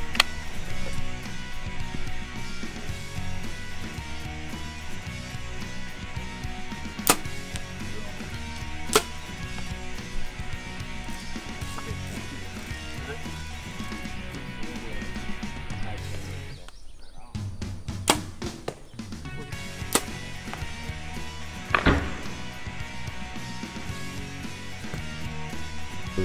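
Background music, broken by about five sharp cracks from compound bows being shot and arrows striking foam 3D targets, the last and loudest ringing on briefly.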